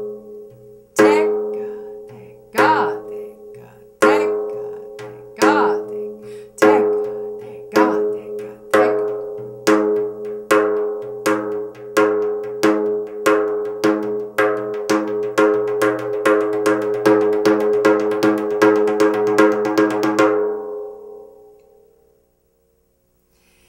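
Remo Thinline frame drum played with alternating-hand treble strokes (tek and ka): accented strokes with lighter ones between, the head ringing after each. The strokes speed up steadily from slow beats into a fast roll, then stop about two seconds before the end and ring out.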